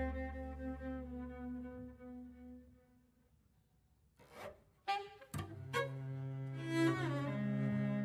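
Improvised chamber jazz on bowed cello and double bass with saxophone: held tones fade away over the first few seconds into a brief near-silent pause. Then come a few sharp, short attacks, followed by new sustained tones with a sliding pitch that stop near the end.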